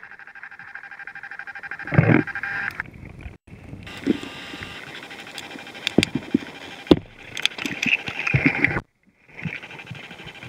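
Sound picked up by an underwater camera below lake ice: a steady whine with scattered knocks and clicks, and a louder thump about two seconds in. It drops out twice briefly.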